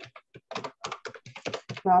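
Typing on a computer keyboard: a fast, irregular run of key clicks, with a man's voice starting near the end.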